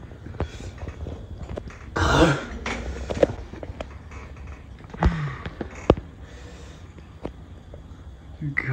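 A man's pained, hard breathing and a cough-like burst as he reacts to the burn of an extremely spicy chip, with a few sharp knocks.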